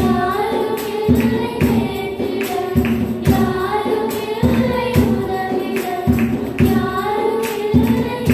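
Two girls singing a Tamil Christian worship song together into microphones, over musical accompaniment with a steady beat of about two strokes a second.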